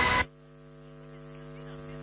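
A loud noisy sound cuts off abruptly a quarter second in, leaving a steady low hum with even overtones that slowly grows louder.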